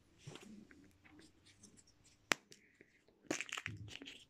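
Hands unwrapping a Kinder Surprise egg: faint rustling of the foil wrapper, a single sharp click about two seconds in, then louder crinkling near the end.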